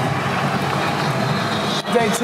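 Open golf cart driving along, a steady running and rolling noise, with voices of people nearby in the background; the sound drops out briefly near the end.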